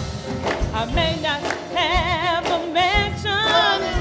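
Gospel praise-and-worship singing: a lead voice sings with a wide vibrato over the praise team, backed by a steady beat of about two thumps a second.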